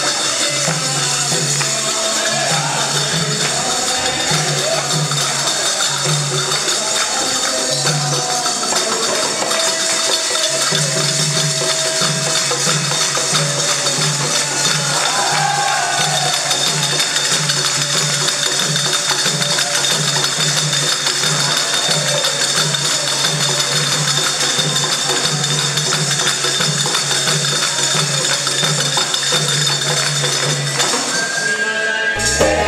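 Devotional kirtan accompaniment: continuous jingling hand percussion over a steady, even drum beat, with faint voices.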